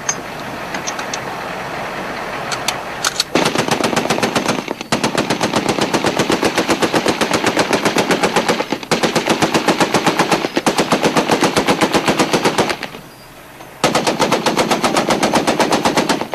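An M2 .50-calibre heavy machine gun firing long, rapid bursts from a moving Humvee's turret, starting about three seconds in with brief breaks and a gap of about a second near the end before a last burst. Before the firing starts there is a steady rumble of vehicle and wind.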